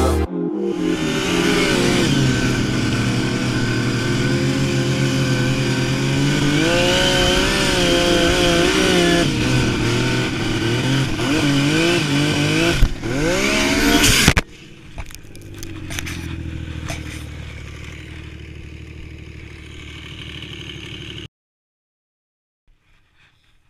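Turbocharged 2014 Yamaha Nytro snowmobile's four-stroke three-cylinder engine running and revving, its pitch rising and falling several times. About fourteen seconds in it drops suddenly to a quieter, steady running, then cuts off shortly before the end.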